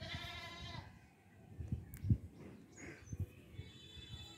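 A single drawn-out bleat from a farm animal in the first second, followed by a few faint low knocks.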